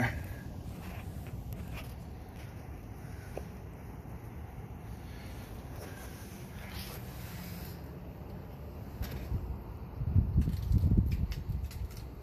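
Low, steady rumbling background noise with soft rustling as the handheld camera is moved about under the truck, and a few louder muffled bumps about ten seconds in.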